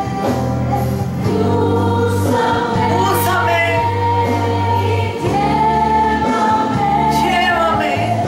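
Christian worship song with choir singing over accompaniment with long held bass notes.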